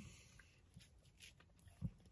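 Near silence: car-cabin room tone, with a few faint ticks and one brief soft sound near the end.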